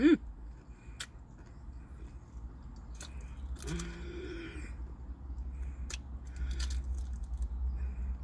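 A person chewing crispy fried butterfly shrimp close to the microphone: wet chewing with a few sharp crunchy clicks. There is a short hummed "mm" of enjoyment at the start and another about four seconds in, over a steady low hum.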